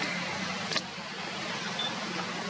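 Steady outdoor background noise with a low hum, broken by one sharp click about three-quarters of a second in and a brief high beep-like tone near the end.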